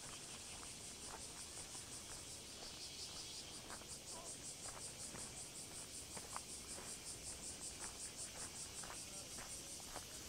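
Cicadas singing in a steady, high-pitched pulsing chorus, about four pulses a second, with faint footsteps on a path beneath it.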